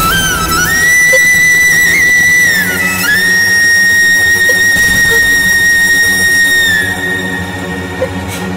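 Dramatic background music: a high, whistle-like melody of long held notes, dipping briefly about three seconds in and falling away near the end, over a steady low drone.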